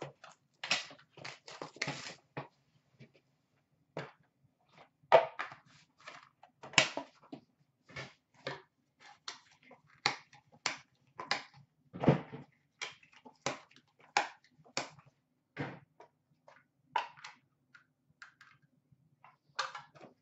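Irregular clicks and taps of a cardboard trading-card box being opened and a plastic card case handled and set down on a glass counter, thinning out near the end.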